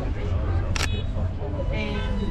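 Steady low rumble inside a moving aerial tram cabin, with one sharp click a little under halfway through.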